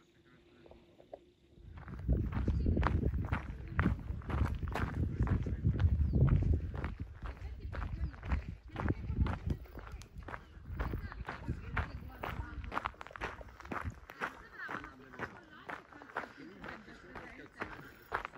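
Footsteps at a steady walking pace, about two to three a second, with a low rumble through the first several seconds.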